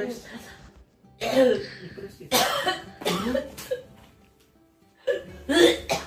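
A woman crying, her sobs coming in about five voiced bursts, over background music.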